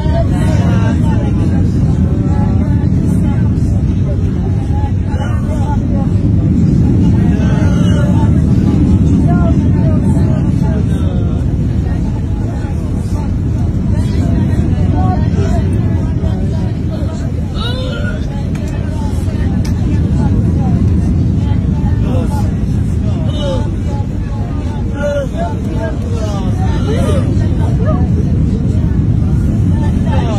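Loud, steady low roar of an airliner cabin in flight, engine and airflow noise, during an emergency approach with passengers braced. Scattered voices of passengers call out and murmur over it.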